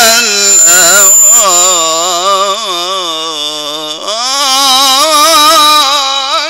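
A man reciting the Quran in the slow melodic mujawwad style, holding long ornamented notes that waver in pitch, with a new rising phrase about four seconds in.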